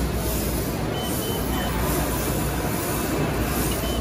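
Steady rumble and hiss of a busy exhibition hall, with a few faint, short, high beeps about a second in and again near the end.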